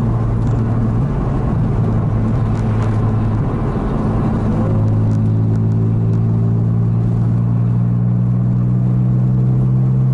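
A Porsche's engine drones steadily while cruising, heard from inside the cabin over tyre and road noise. About halfway through, the engine note firms into a steadier, stronger hum.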